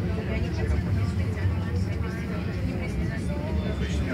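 Tram running, heard from inside the passenger car: a steady low rumble, with passengers talking over it.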